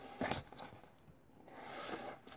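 Quiet pause filled with a child's breathing: a short breath sound about a quarter second in, then a soft intake of breath near the end.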